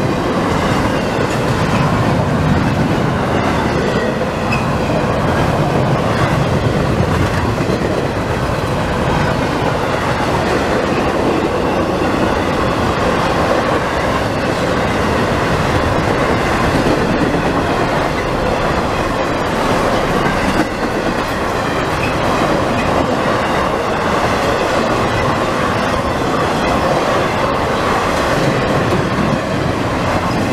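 Double-stack intermodal freight train rolling past close by: a loud, steady rumble and rattle of the container well cars' steel wheels on the rails.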